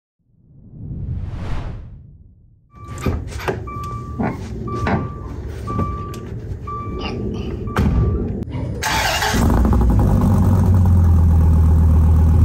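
A whoosh swells and fades in the first two seconds. Then a chime beeps about once a second over knocks and clunks. About nine seconds in, the 2016 Dodge Viper ACR's 8.4-litre V10 starts and settles into a loud, deep, steady idle.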